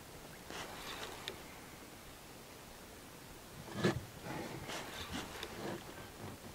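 Faint handling sounds in a small boat: light rustling, one knock about four seconds in, then a run of small clicks and rustles as a spinning rod and reel are worked.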